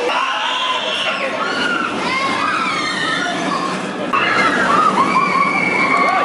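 A roller coaster train running on its track, with many voices and shouts from riders and the crowd over it. It gets louder about four seconds in, with one long high call near the end.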